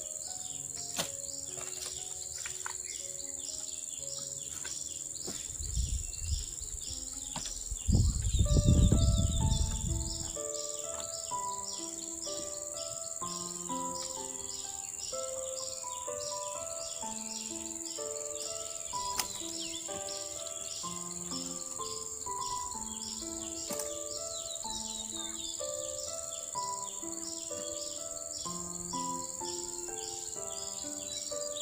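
Tropical insects keep up a steady high buzz over a rapid pulsing chirp, while a slow background melody of single notes plays. A loud low rustling knock, lasting about two seconds, comes about eight seconds in, with a smaller one just before it.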